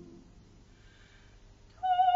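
Recorded choral singing fades away into a brief, almost silent pause. Near the end, a single high note with wide vibrato starts abruptly and is held, operatic singing resuming.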